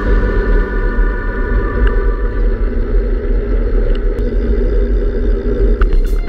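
Wind rushing over a handlebar-mounted camera's microphone on a moving road bike, a steady low rumble, with faint sustained musical tones above it.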